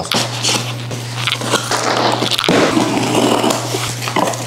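A box cutter slicing through the packing tape and cardboard of a shipping box, with irregular scraping and crackling strokes over a steady low hum.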